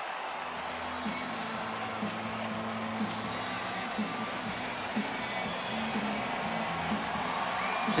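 Hockey arena crowd noise, steady cheering, with music playing under it in held notes.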